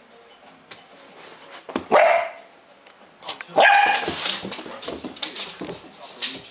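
Dog barking twice while playing: one bark about two seconds in, then a longer one a second and a half later.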